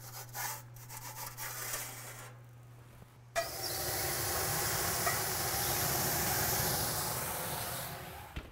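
A wooden transfer peel rubbing and scraping as baguettes are slid off it into the oven, then, about three seconds in, a sudden loud hiss as water is poured into a hot pan in the oven to make steam for the bake, fading slowly.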